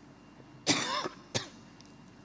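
A woman coughing twice, a longer cough followed by a short one.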